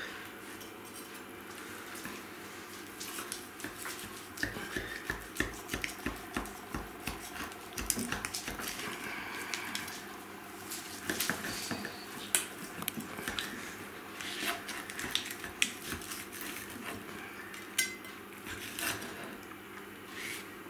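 Knife slicing a cooked porterhouse steak on a wooden cutting board: scattered knocks and scrapes of the blade against the board. About a third of the way in comes a run of regular cutting strokes.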